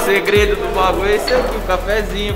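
Breakfast-room clatter: people talking, with cups, plates and cutlery clinking, over a low bass line from the background music.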